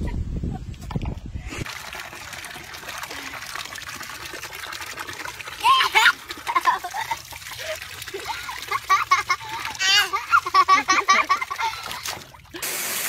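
Water pouring from a garden hose into a plastic wading pool, a steady trickle and splash, with a baby squealing about six seconds in and babbling in a run of high, wavering cries near the end. A low rumble fills the first second and a half.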